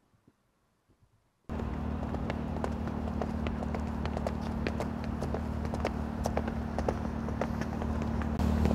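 Near silence, then about a second and a half in a steady low hum comes in abruptly, with footsteps on a concrete sidewalk clicking irregularly over it.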